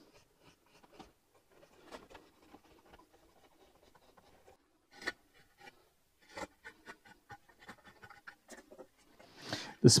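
Leatherman knife blade shaving a wooden guitar neck by hand: faint, irregular short scraping cuts. One stronger stroke comes about halfway through, and a quicker run of small cuts follows in the second half.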